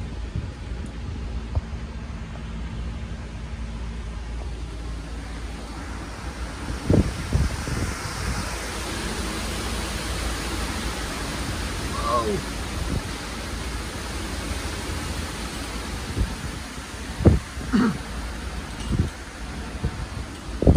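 Gusty microburst wind of about 40–50 mph rushing through a large tree's branches and leaves, a steady roar that swells in the middle, with low wind buffeting on the microphone. A few short thumps come in about seven seconds in and again near the end.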